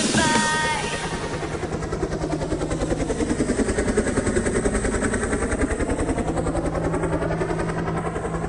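Helicopter sound effect: rotor chopping in a fast, even beat over a steady low hum, its hollow tone sweeping slowly down and back up.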